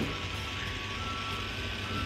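Small battery-powered rotating facial cleansing brush switched on and running with a steady electric motor hum.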